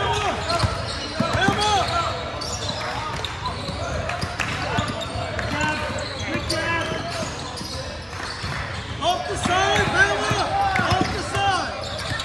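Basketball game sounds in a gymnasium: a basketball being dribbled on the hardwood floor, sneakers squeaking, and players and spectators calling out, all echoing in the hall. The activity gets busiest near the end, with a cluster of squeaks and calls.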